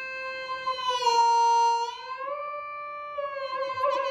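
Nord Stage 3 synth lead sounding one held note whose pitch is bent with the pitch stick: it dips about a second in, glides up about two seconds in, eases back down, then wobbles in vibrato as the stick is wiggled near the end.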